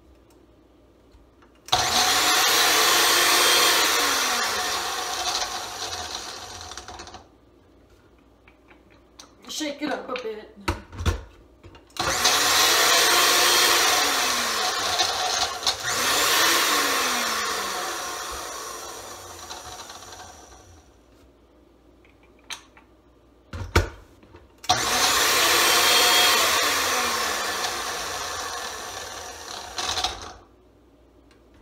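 Countertop blender with a stainless base running in three bursts of several seconds, chopping a cold pancake and whole carrots. Each burst starts abruptly and fades as it runs. Between the bursts come a few knocks and a sharp thump.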